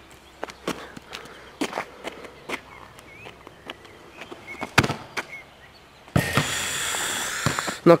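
Footsteps on an asphalt court, with scattered knocks from a handheld camera and one sharper thud about five seconds in. Near the end comes about a second and a half of steady rushing noise that cuts off suddenly.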